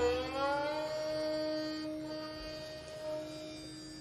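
Dilruba, a bowed Indian string instrument, sliding up into a final long held note that slowly fades. A lower steady note sounds beneath it.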